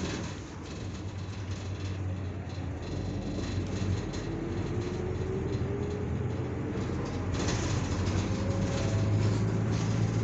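Inside a moving city bus: a steady low engine drone and road noise, with a faint whine that rises in pitch a few seconds in as the bus gathers speed, the whole growing louder toward the end.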